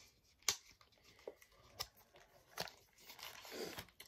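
A cardboard eyeshadow-palette carton being opened by hand: a few faint separate clicks and scrapes of the box, then a longer rustle building up near the end as the plastic-wrapped palette comes out.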